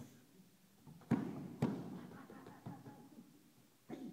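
Strikes landing on Muay Thai pads held by a coach: two sharp smacks about half a second apart a second in, then a couple of fainter hits.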